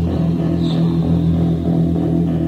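Instrumental passage of a 1984 gothic rock studio demo: bass guitar and electric guitar playing sustained notes, with no vocals.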